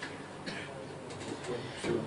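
A quiet pause with faint, brief murmured voices in a small room.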